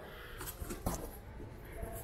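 Faint rustling of paper packing and a few light taps against a cardboard bike box as a hand reaches into it.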